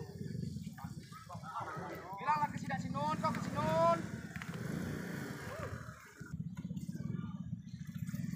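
Onlookers' voices talking and calling out, with one louder rising call about three and a half seconds in, over a steady low motor drone.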